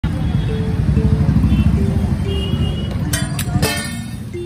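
A motor vehicle engine running close by, a low fluttering rumble under street noise, with background music playing a simple melody over it. A few sharp metallic clatters come about three seconds in.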